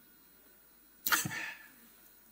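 Near silence, then about a second in a single short, sharp breath noise from a man, fading within about half a second.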